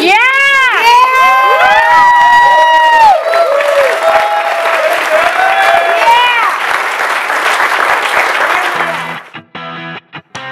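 Audience cheering with many overlapping whoops and applause. The cheering cuts off suddenly near the end and a short music sting begins.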